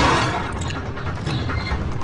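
Car-chase sound effects: traffic rushing along a motorway, with a run of sharp metallic clanks and clicks a little after the start.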